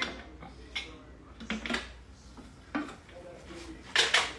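A few sharp clicks and knocks as a Thermomix TM6 is stopped and its lid is unlocked and lifted off the mixing bowl, with the caramel sugar stage finished.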